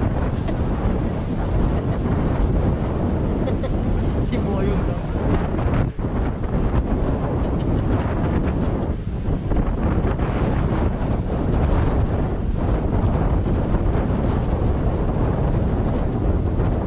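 Steady wind buffeting the microphone with the rumble of a moving car, loud and low throughout, briefly dipping about six seconds in.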